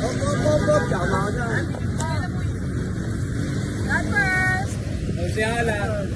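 Steady low rumble of street traffic and vehicle engines, with people's voices talking and calling out over it several times.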